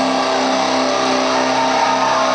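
Distorted electric guitars holding one loud sustained chord that drones steadily, ringing out at the end of a live rock song after the drums have stopped.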